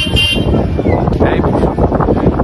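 Outdoor street noise: a brief horn toot just at the start, then a steady, noisy rumble from a gathered crowd and traffic.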